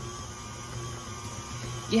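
KitchenAid Artisan stand mixer running steadily with a low, even hum as its flat paddle beats an egg into thick pound cake batter.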